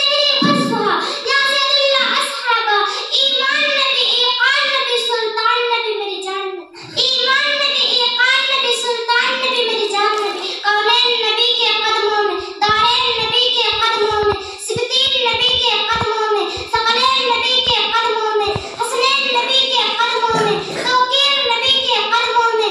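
A young girl's voice reciting in a melodic, half-sung chant, with one short pause about seven seconds in.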